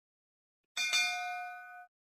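Notification-bell sound effect from an animated subscribe graphic: a bright bell ding begins about three-quarters of a second in, with a second strike just after. Its ringing tones fade out within about a second.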